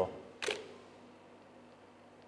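Camera shutter firing once, a single sharp click about half a second in.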